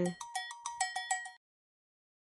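A quick run of short, bright, bell-like ticks, about seven in just over a second, that stops abruptly.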